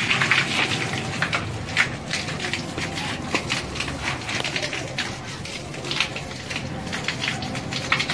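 A steady stream of water from the end of a garden hose splashing onto a concrete floor, coming out at full pressure.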